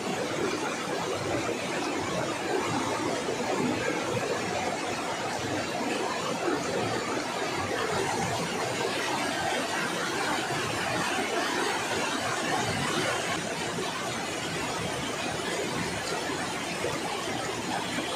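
Steady rushing of a shallow, rocky river, an even noise without breaks.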